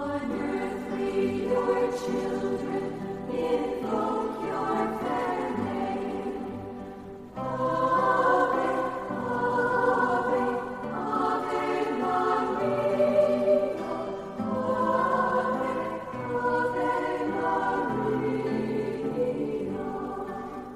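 Choir singing a slow sacred hymn in long held chords. The voices thin out and fade about seven seconds in, then return fuller and louder.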